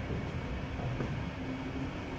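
Steady low rumbling background noise with a faint click about a second in.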